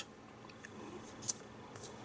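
Faint paper handling: hands shifting on a glossy magazine page, making a few soft rustles and light clicks, the loudest a little past the middle.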